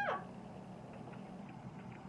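The tail of a cat's meow, sliding down in pitch and ending just after the start. Then quiet room tone with a faint low hum.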